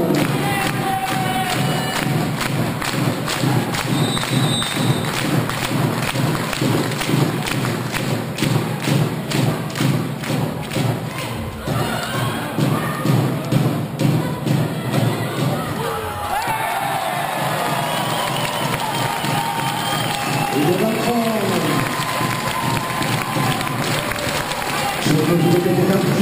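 Volleyball hall crowd beating out a steady rhythm of thumps, about three a second, under general crowd noise and cheering. The beat stops about halfway through, and voices rising and falling in pitch carry on over the hall noise.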